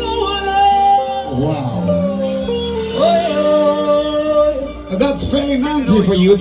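A live band with drum kit and bass guitar playing, with a singer holding long, gently wavering notes.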